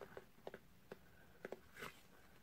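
Near silence with a few faint, short taps and clicks as gloved hands handle a cardboard box.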